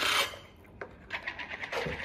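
A short scraping rasp as a clear jar of roasted pistachios is opened. About a second later come faint clicks and rattles of the nuts being picked from the jar.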